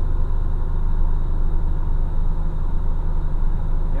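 Heavy truck's diesel engine running steadily, heard from inside the cab as a constant low drone.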